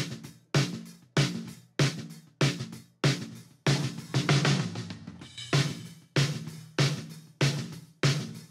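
Recorded snare drum, top and bottom mics mixed together, played back in a loop through a mixing console: steady single hits a little under two a second, each ringing down before the next.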